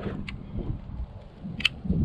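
Low, uneven wind rumble on the microphone, with a single sharp click from the hand pruners about one and a half seconds in.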